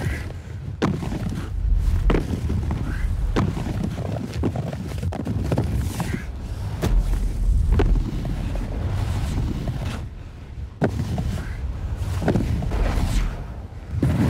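Snowboard riding over hard-packed snow: a steady low rumble of the board running, broken by about a dozen sharp knocks and thuds as it hits, scrapes and lands on the snow blocks.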